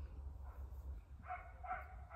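Dog giving a run of short, high yips, about two or three a second, starting a little over a second in.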